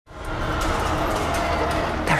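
A steady low rumbling drone with several held tones layered over it, fading in quickly at the start: sci-fi film sound design of a city's air traffic and hum, possibly blended with score.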